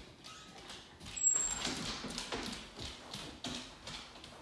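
A wolfdog's claws clicking on wooden stairs and a hardwood floor as it walks, an uneven run of light taps.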